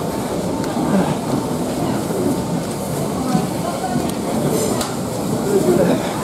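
Busy railway station platform: overlapping background chatter of people over the steady noise of trains standing at the platform.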